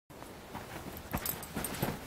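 An adult Labradoodle and her puppy scuffling on a duvet-covered bed: bedding rustles under their paws, with a few short, soft thumps, the strongest a little over a second in.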